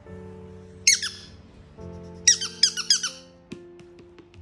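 Squeaker in an egg-shaped penguin dog toy squeaking as a dog plays with it: one squeak about a second in, then four quick squeaks in a row a little after two seconds. A couple of light clicks follow near the end.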